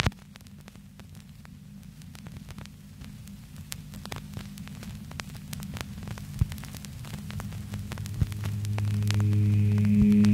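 Stylus of a Technics SL-1210MK2 turntable with an Ortofon Concorde cartridge tracking the silent lead-in of a vinyl record: a steady low hum and hiss with scattered crackles and pops, and a sharp pop at the very start. Near the end a low, swelling synth note fades in as the track begins.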